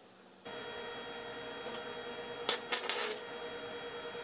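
Wire-feed flux-core welder: a steady hum starts about half a second in, then a brief burst of sharp arc crackles about two and a half seconds in as a bolt is tack welded into the end of a steel seat-post tube.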